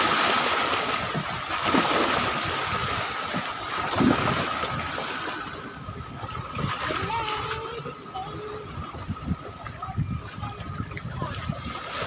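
Small waves splashing and sloshing at the water's edge, louder in the first few seconds and then quieter, with a faint steady high tone underneath.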